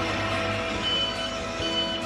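A small truck running, with two short high-pitched beeps: one about a second in and one near the end.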